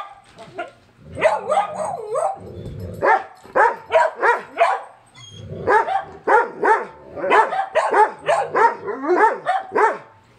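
A dog vocalizing in long runs of short, pitched, bark-like yowls and whines, several a second with the pitch bending on each, in three bouts with short pauses between: the talkative 'storytelling' a dog does when it is answering its owner.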